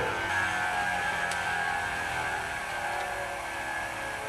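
Lindemann rotary attraction motor running with a steady whine of several tones, sinking slowly in pitch and level as it is loaded down by hand.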